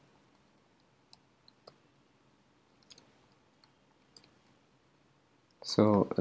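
A few faint, scattered computer keyboard keystrokes, about seven clicks spread unevenly over a few seconds.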